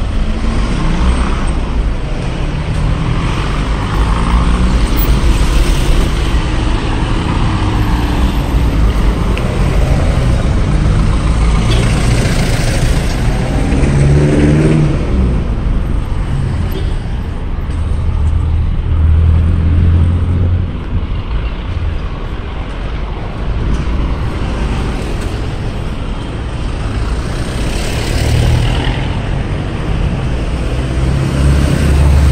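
Street traffic passing close by: car engines running with a steady low rumble, one vehicle's engine rising in pitch as it accelerates a little past the middle.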